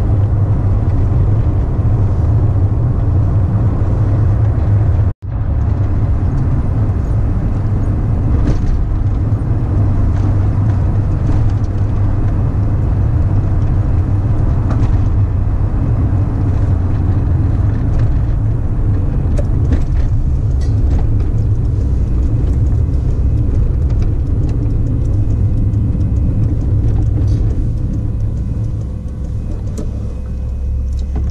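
Steady low road and engine rumble heard inside a moving van's cabin. The sound cuts out for an instant about five seconds in and eases slightly near the end as the van slows.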